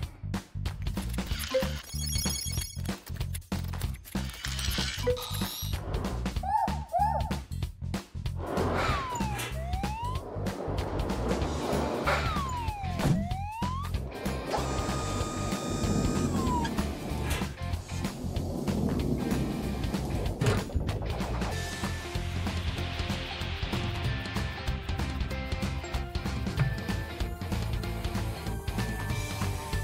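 Cartoon background music with a steady bass, overlaid with sound effects: several sliding tones that rise and fall near the middle, and scattered clicks and clanks.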